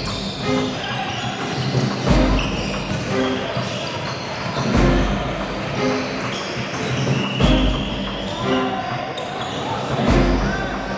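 Basketball bouncing on a hardwood gym floor and players' voices during a game, over music with a heavy low beat about every two and a half seconds.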